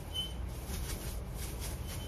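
Paint roller on an extension pole being worked through wet latex paint, a soft rasping that repeats with each stroke.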